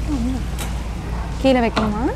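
A voice saying "no" over and over, over a steady low hum.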